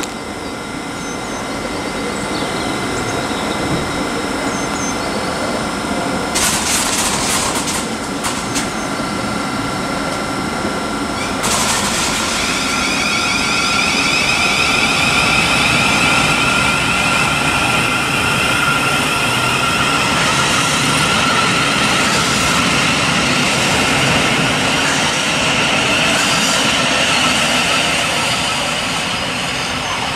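Thameslink Class 700 electric multiple unit (a Siemens Desiro City) moving at the platform: a steady electric whine over rumbling wheel-on-rail noise, growing louder from about twelve seconds in.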